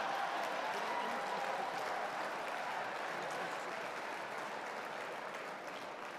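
Large audience applauding after a joke, the applause slowly dying away.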